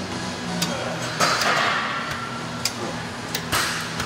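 Leg extension machine being worked through reps: sharp clicks and clanks of the weight stack and lever arm every second or so. A loud, effortful breath out comes a little over a second in.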